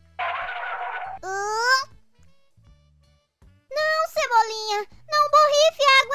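A spray-bottle squirt lasting about a second, then high-pitched cartoon character voices crying out in short bursts, over soft background music.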